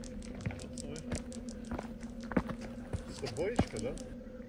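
Footsteps on rocky ground over a steady low hum, with a fast run of faint ticks.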